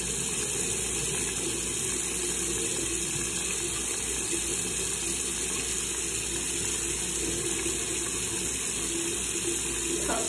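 Bathroom tap running steadily into the sink.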